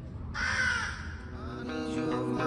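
A single harsh, animal-like call lasting well under a second, over faint ambient music, with plucked guitar coming in near the end.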